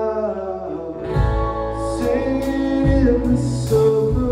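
Live band playing a song: electric guitar, keyboard and a sung voice, with bass and drums coming in about a second in.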